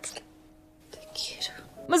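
Soft, breathy whispering and breathing from two women kissing, over quiet sustained music. There is a short breath at the start and a longer breath that falls away about a second in.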